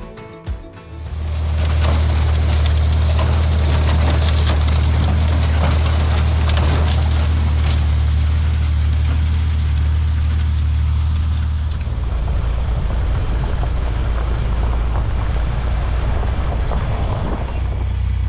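John Deere 4020 six-cylinder tractor engine running steadily under load while pulling a six-row corn planter through the field. About twelve seconds in the sound changes to another stretch of the same tractor running.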